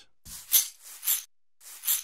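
Sliced percussion loop played back in the Punch 2 drum plug-in: three bright, hissy strokes about two-thirds of a second apart, with a faint low knock under the first.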